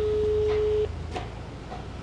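A steady, pure electronic beep tone of one pitch, about a second long, that cuts off sharply.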